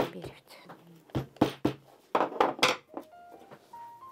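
A hammer tapping a fur hat stretched on a hat form: about eight quick knocks in small groups of two or three, stopping about three seconds in.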